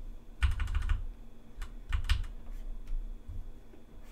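Computer keyboard keys being pressed: a quick run of clicks about half a second in, then scattered single strokes and a pair of clicks around two seconds.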